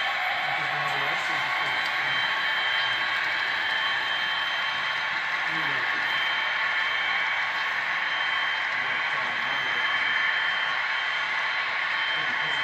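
Steady rolling noise of a long train of HO-scale hopper cars running on model railway track, with faint voices talking underneath.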